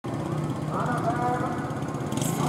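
A motor vehicle's engine running steadily, with people's voices over it.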